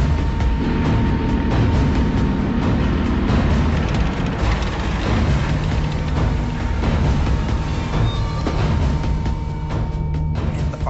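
A tank moving, its engine and tracks making a continuous low rumble, with music playing over it.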